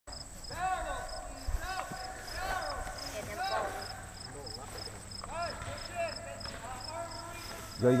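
Voices of people talking some way off across an open field, over an insect, likely a cricket, chirping steadily about two to three times a second with a thin, high, constant whine.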